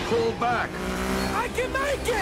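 Movie car-chase soundtrack: a steady vehicle engine rumble under dialogue, with a man's voice speaking over it.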